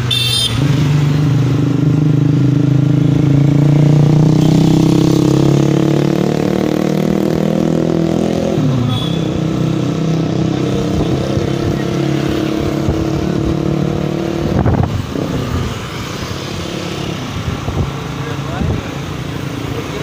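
Motor vehicle engine accelerating: its note climbs steadily for about eight seconds, then drops away, and traffic carries on around it. A sharp thump comes about fifteen seconds in.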